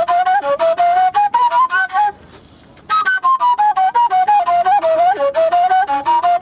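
Kaval, the Bulgarian end-blown flute, playing a quick melody of short, separately tongued notes. The tune breaks off for a breath about two seconds in, then resumes.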